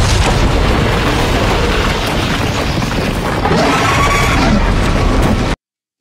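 Episode soundtrack of a dragon's fire blasting a colossal ice wall as it collapses: a continuous loud rumble of explosive destruction with music under it. It cuts off suddenly about a second before the end.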